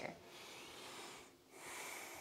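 A woman breathing, faint: one long breath, a brief pause about a second and a half in, then the next breath begins.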